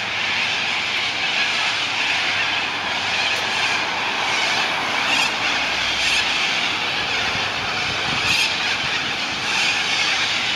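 A large flock of cockatoos screeching together in a loud, steady, dense din.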